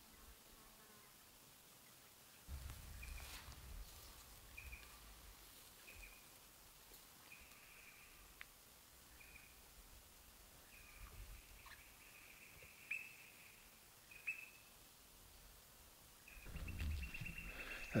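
Faint, quiet bush ambience: a short high chirp repeats every second or two, a few of them drawn out longer, with soft low rustling about two seconds in and again near the end.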